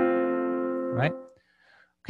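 A piano chord struck and held, cut off about a second in, then near silence.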